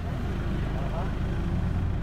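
Steady low rumble of a passenger van heard from inside the cabin, with faint chatter of passengers.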